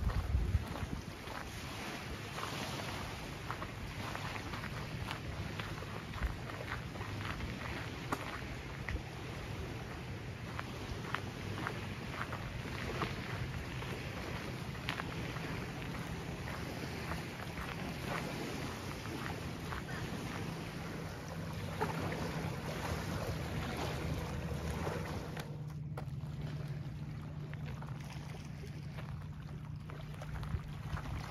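Wind blowing across the phone microphone, with irregular footsteps crunching on a sandy gravel trail and a low steady hum underneath. Near the end the crunching stops.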